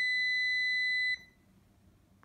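Multimeter continuity beep: a steady high beep lasting just over a second that cuts off suddenly. The pressed membrane contact is closing the circuit between the keyboard connector's spacebar pins 22 and 25.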